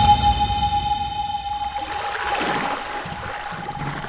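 Logo sting sound design for a news intro: a single high tone held steady over a low rumble and fading ringing overtones, with a swell of hiss about two seconds in, the whole thing slowly fading out.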